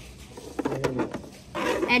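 A few light knocks of plastic wrestling action figures being handled on a toy ring, mixed with a child's low vocal noise, then the child starts speaking near the end.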